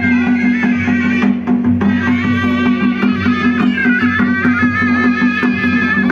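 Ladakhi traditional folk dance music: a wavering, ornamented melody over a steady low drone, with regular drum strokes keeping the beat.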